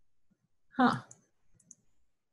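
A brief spoken "huh" of puzzlement, followed by a few faint, short clicks.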